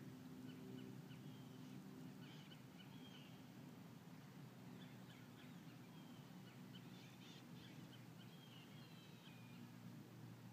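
Faint outdoor ambience: birds calling in short chirps, in two clusters, over a low steady hum.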